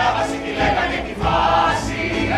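A chorus of voices singing together over instrumental accompaniment.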